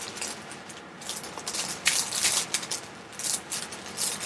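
Small plastic bags of diamond-painting drills crinkling and rustling as they are handled on the canvas's plastic cover film, in irregular crackles.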